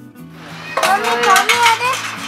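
Background music, joined about a second in by loud, high-pitched voices talking over it.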